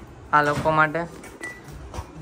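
A person's voice gives a loud, drawn-out call of about half a second, followed by a short high beep.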